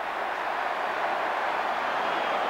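Steady crowd noise from a large stadium crowd during a rugby league match, with no single shout or clap standing out.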